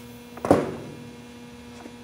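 A steady electrical hum, with one sharp knock about half a second in and a faint click near the end, from handling a tool at a metalworking bench just after the drill has stopped.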